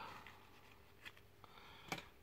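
Mostly quiet, with a few faint clicks from hands handling a fishing hook and braided line, the sharpest a short tick near the end.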